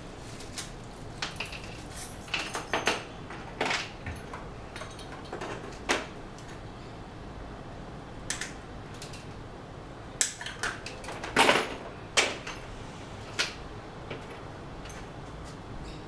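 Small items being handled by hand: irregular clicks, clinks and rustles of plastic packaging and small metal hardware, with the loudest cluster a little past halfway.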